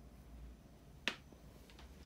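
Faint low hum with one sharp click about a second in and a softer one near the end, from an electric pottery wheel whose motor has burnt out and is smoking.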